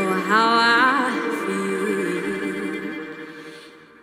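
A young girl singing solo, a slow, jazzy ballad line with a rising slide into a long held note that fades away toward the end.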